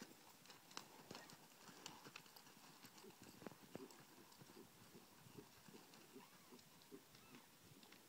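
Faint hoofbeats of a ridden horse moving over soft arena dirt: an even run of soft thuds.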